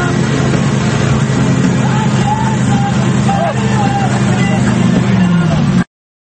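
Tow boat's engine running steadily under the rush of wake water and wind, heard from on board. The engine note drops a little just before the sound cuts off abruptly near the end.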